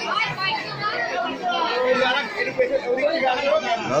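Several people talking at once in a room: overlapping chatter with no single clear voice.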